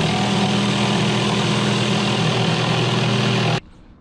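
Cordless jigsaw cutting through a sheet of plywood, the motor running steadily as the blade saws through the wood, then stopping abruptly about three and a half seconds in.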